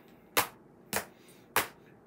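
Three sharp smacks about half a second apart as handheld toys, a board book and a plastic toy phone, are bashed together.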